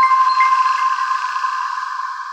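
Closing chime of an electronic outro jingle: a bell-like chord keeps ringing after the beat stops, slowly fading away.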